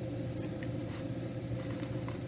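A steady low background hum with a faint steady tone above it, and a few faint ticks scattered through it.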